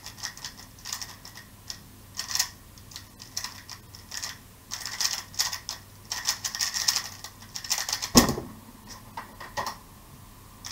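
A MoFang MF3RS M 2020 magnetic speedcube being turned very fast in a timed solve: quick runs of light clicking and rattling turns for about eight seconds. It ends in a single loud thump as the hands slap down on the timer to stop it, followed by a few more clicks.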